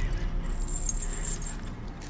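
Metal shackle chains clinking and jangling as a prisoner's ankle fetters move, with a thin high metallic ringing partway through.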